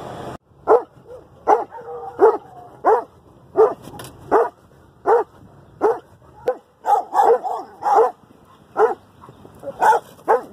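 A Doberman barking loud, sharp barks about once every three quarters of a second, with a quicker run of barks around seven to eight seconds in, as he barks at other dogs beside the road.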